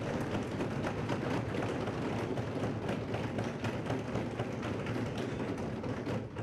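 Steady ambient noise of a large meeting hall: a dense hiss with many faint clicks and taps, no clear voices.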